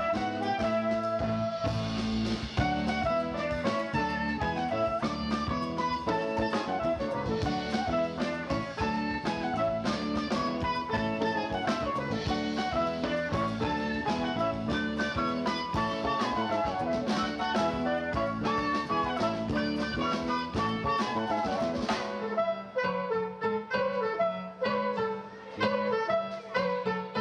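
Live jazz fusion band playing: soprano saxophone over electric guitar, electric bass and drum kit. About 22 seconds in, the bass and drums drop out, leaving lighter, choppier higher parts.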